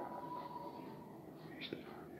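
Faint whispering voice, low in level, with a short click near the end.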